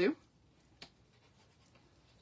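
Faint scratching of a liquid glue bottle's applicator tip drawn in a wavy line across cardstock, with one sharp click about a second in.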